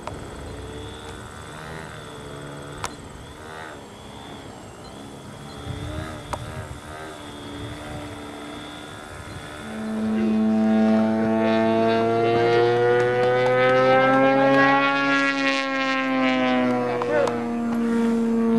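Faint high whine of a foam RC plane's small electric motor and propeller in flight, wavering in pitch, with faint voices. About halfway through, a much louder deep droning tone with overtones takes over, slowly rising and then falling in pitch.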